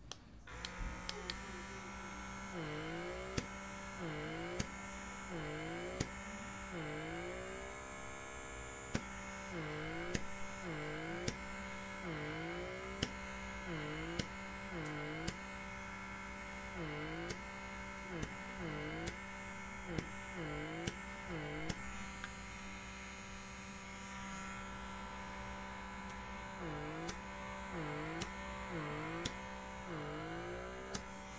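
Blackhead vacuum pore cleaner running with a steady electric motor hum. Its pitch dips and recovers about once a second as the suction tip is worked over the skin of the chin, with a pause of a few seconds about two-thirds of the way through.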